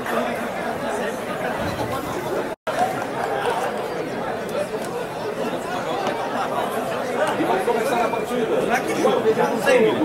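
Crowd of spectators chattering: many overlapping voices with no clear words. The sound cuts out completely for an instant about two and a half seconds in.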